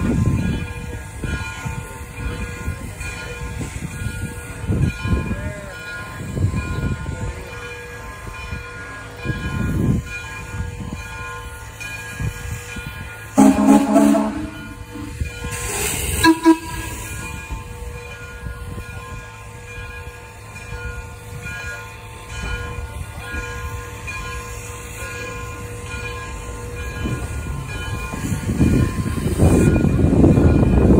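Frisco 1630 2-10-0 steam locomotive moving slowly with a steady low rumble and hum. About halfway through its steam whistle gives a short blast, then a second, briefer toot with a hiss of steam two seconds later. The rumble grows louder near the end.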